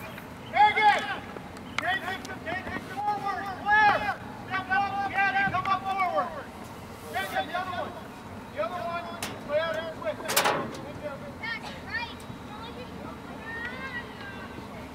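High-pitched voices shouting and calling out in short bursts across a soccer field during play, with one sharp sound about ten seconds in.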